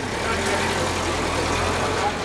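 A car's engine running at low speed close by: a steady low hum with road noise as the car creeps past.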